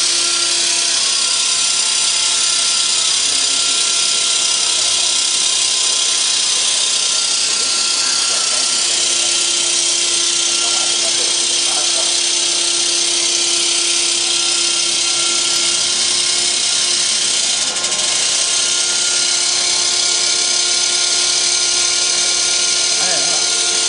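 Steady running noise of corrugated-board factory machinery: a loud, even high hiss with several steady hum tones beneath it. A low hum grows stronger for a while in the middle.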